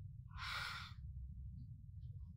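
A woman's heavy sigh: one breathy exhale lasting under a second, over a steady low hum.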